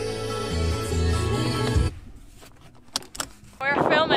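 Background music with sustained chords over a bass line, cutting off abruptly about two seconds in. After a quieter stretch with a few clicks, wind buffeting the microphone and a voice come in near the end.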